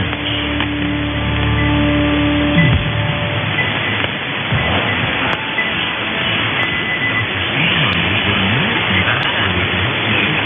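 Weak AM broadcast station on the medium-wave band, received in synchronous AM on about 1270 kHz: faint music buried in static and hiss, with the narrow, muffled sound of an AM channel. A steady low hum-like tone runs for the first two to three seconds, and faint ticks come about every second and a bit from the middle on.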